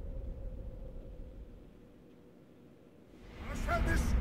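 Film trailer soundtrack played back: a deep low rumble fades away over the first two seconds to near quiet. About three seconds in, wavering pitched cries that slide up and down start up.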